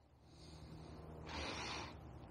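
Soft hiss of air and Slime tire sealant moving through the filler hose of a squeezed plastic bottle at the bike tube's valve. It is louder for about half a second near the end.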